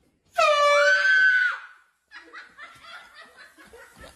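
A person's loud, high-pitched scream lasting a little over a second, its pitch jumping upward partway through, followed by softer talk and laughter.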